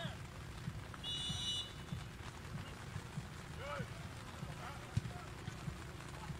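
A referee's whistle gives one short, high blast about a second in, signalling the kickoff after a goal. Faint shouts from players are heard over a steady low background rumble.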